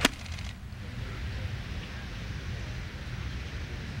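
Golf club striking a golf ball on a full approach swing from the fairway: one crisp click right at the start, then steady open-air background noise.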